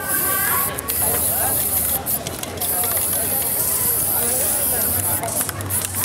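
Aerosol spray paint can hissing as paint is sprayed onto a stencil painting, in long bursts with a few brief breaks, stopping near the end.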